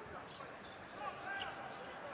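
Basketball being dribbled on a hardwood court, with faint voices in the background.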